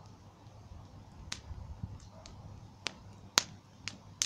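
Bonfire of brushwood and twigs crackling: about five sharp pops from the burning wood, the loudest about three and a half seconds in, over a faint low rumble.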